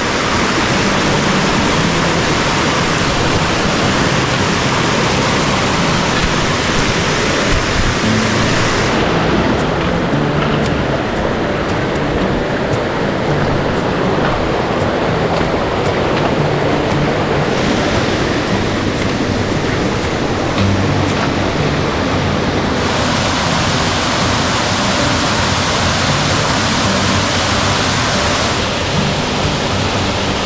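Mountain creek cascading over boulders and a waterfall: a loud, steady rush of water whose tone changes abruptly several times.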